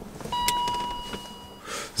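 A single electronic chime: one clear ding that starts about a third of a second in and fades away over roughly a second, followed by a brief rustle near the end.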